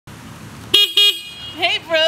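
Two short beeps of a small motor scooter's horn, one right after the other, about a second in, followed by a voice near the end.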